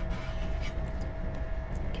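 Steady low background rumble with a thin steady hum above it, and a few light clicks of a knife against a wooden cutting board as a blood sausage is sliced.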